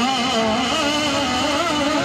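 A man singing a naat (Urdu devotional poem) into a microphone, holding a long, wavering melismatic phrase.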